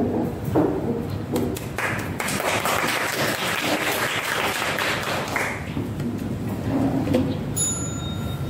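A small audience clapping for a few seconds, then a single ringing chime near the end.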